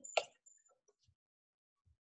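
A sharp click about a quarter second in, then a few faint ticks: a metal potato masher knocking against an aluminium foil pan while potatoes are being mashed.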